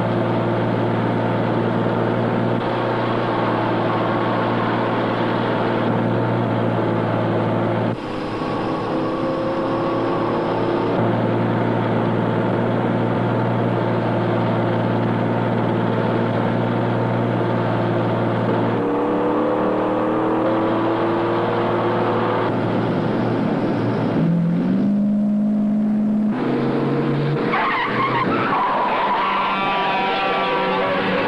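Car and truck engines driving at speed, a steady drone that shifts in pitch several times and rises about 24 seconds in, with a wavering higher sound near the end.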